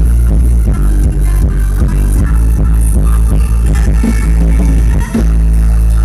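Live Thai ramwong dance band playing loud, bass-heavy music with a steady beat, briefly dipping just after five seconds in.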